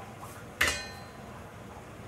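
A single sharp metallic clink about half a second in, ringing briefly, as a metal kitchen utensil knocks against something during cannoli shell making; faint room tone otherwise.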